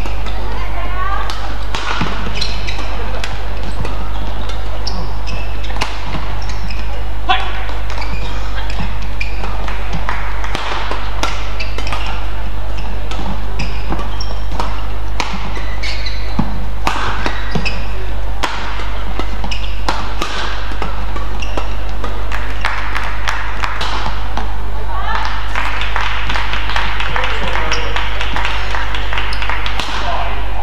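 Badminton rallies: rackets striking the shuttlecock in quick succession and shoes squeaking on the court, over a steady low hum. Near the end the crowd cheers as a point is won.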